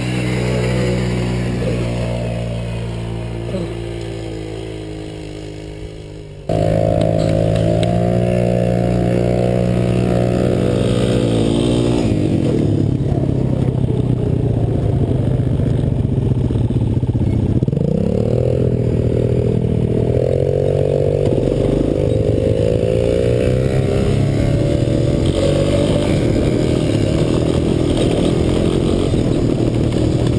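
Small ATV (quad bike) engines running. For the first six seconds one quad's engine fades and changes pitch as it is throttled. Then it cuts abruptly to a louder, close-up quad engine that runs steadily, its pitch rising and falling as the throttle is worked, with wind noise.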